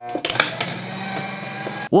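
Paper shredder motor running with a steady hum, a few clicks near the start, with a metal Apple Card stuck in its feed: the card won't shred and won't come back out.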